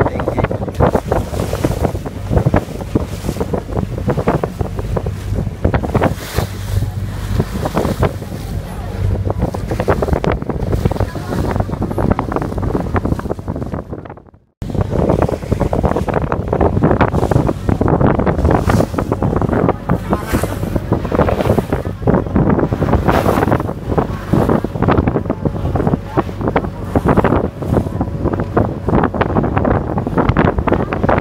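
Wind buffeting the microphone aboard a small motorboat under way at sea, with the boat's engine running steadily underneath and water rushing along the hull. The sound cuts out for a moment about halfway through, then carries on the same.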